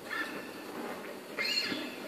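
Faint handling noise from a Takamine acoustic guitar being settled before playing: fingers shifting on the strings, with a brief rising squeak about one and a half seconds in.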